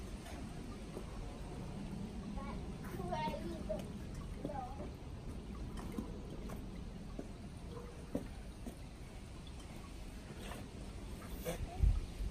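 Faint, indistinct voices over steady outdoor background noise, with a few soft knocks.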